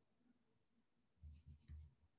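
Near silence, then three quick, soft rubbing bumps in a row a little after a second in.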